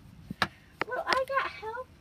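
Two sharp clicks or knocks about half a second apart, followed by a brief bit of a person's voice.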